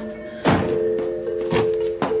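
A door slams shut with a heavy thud about half a second in, and a second thud follows about a second later. Both come over sustained background music chords.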